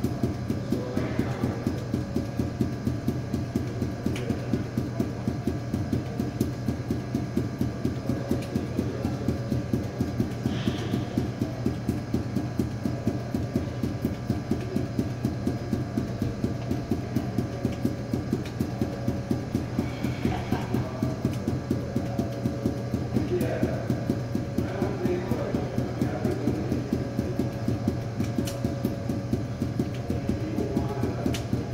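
Five juggling balls force-bounced on a hard polished floor, a rapid, even stream of smacks several times a second, over a steady low hum.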